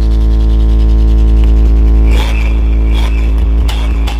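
DJ sound system's big speaker stack playing a very loud, steady deep bass tone during a sound test, with higher electronic sounds joining over it about halfway through.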